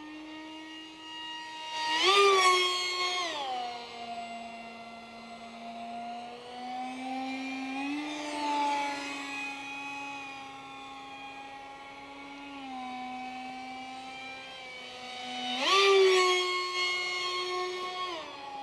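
Whine of a Fasttech 2212/6 2700 Kv brushless outrunner motor driving a three-bladed 6x3 carbon prop on a small foam RC park jet in flight. The pitch shifts up and down several times. It grows louder about two seconds in and again near the end.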